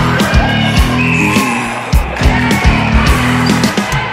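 Background music with a steady drum beat and bass line.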